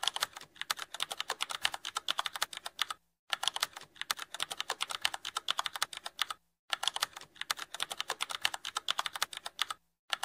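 Computer-keyboard typing sound effect: a fast, uneven run of key clicks, stopping briefly twice, about three and six and a half seconds in.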